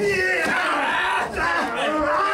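Several men shouting at once: drawn-out, overlapping yells of "yeah!" from wrestlers squaring off and clashing.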